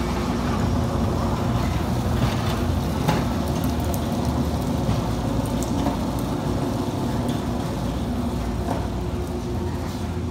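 Manual pallet jack rolling a loaded pallet of plastic crates and boxes across a concrete floor: a steady rumble and rattle from the wheels and load with a few light clicks, easing off slightly as it moves away, over a steady background hum.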